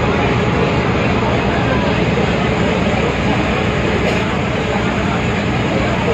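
Steady drone of a passenger river launch's engine, with a crowd of passengers chattering over it.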